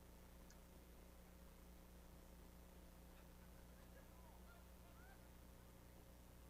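Near silence: a faint, steady electrical hum on the audio line, with a few faint brief squeaks about four to five seconds in.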